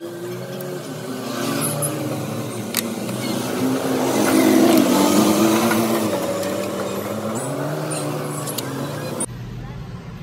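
A motor vehicle's engine, getting louder to a peak about halfway through and then fading, as a vehicle passes by.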